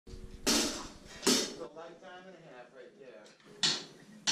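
Three sharp metallic clanks, each ringing out briefly, with quiet talking between them in a studio room.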